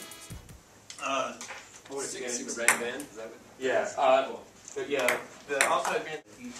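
Table tennis rally: sharp clicks of a celluloid ball struck by paddles and bouncing on the table, the loudest about two and a half seconds in, with voices in the room between hits.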